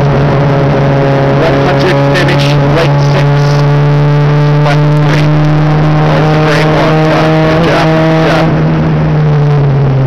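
VW Jetta Mk2 race car's engine heard from inside the cabin, held at steady high revs with sharp knocks and rattles throughout. Its pitch drops near the end as it comes off the throttle.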